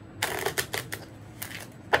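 A tarot deck being shuffled by hand: a quick run of papery card flicks, a few shorter strokes, then a single sharp snap of the cards near the end, the loudest sound.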